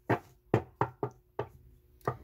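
Five quick knocks, unevenly spaced.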